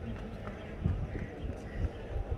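Racehorses walking on turf, their hooves landing in a few dull, irregular thuds, with faint voices behind.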